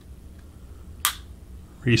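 A single short, sharp click about halfway through: the Sig P365 XL's trigger resetting as it is let forward after a dry-fire press, a reset that is tactile and audible.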